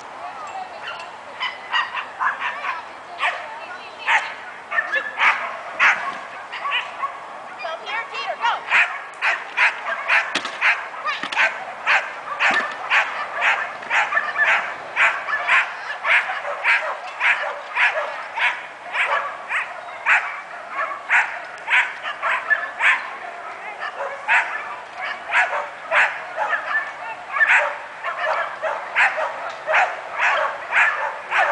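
A dog barking over and over, short sharp barks at about two to three a second, almost without a break, getting busier after the first several seconds.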